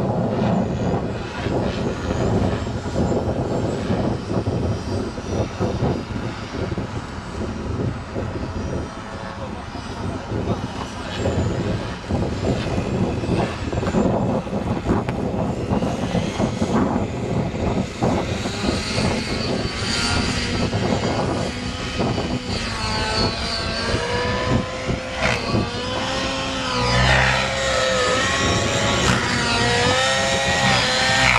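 Radio-controlled model helicopter running, its rotor spinning on the ground and then lifting off and flying. In the second half its whine rises and falls in pitch over and over as it manoeuvres.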